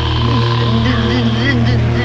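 Eerie horror soundtrack: a steady low drone with a wavering, wailing tone sliding up and down over it.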